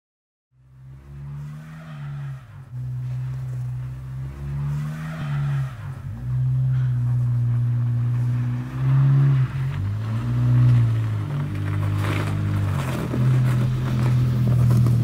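Small hatchback car's engine running on a snow-covered road, its pitch repeatedly rising and dipping as it is revved, with tyre noise on the snow. The sound fades in over the first second or two.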